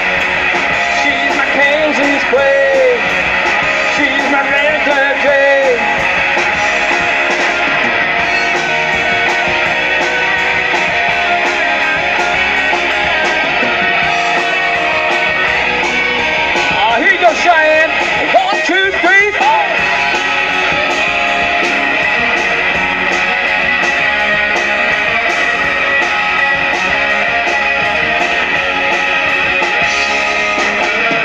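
Live rock band playing with electric guitars and drums, a wavering lead guitar line rising out of the mix a little past the middle.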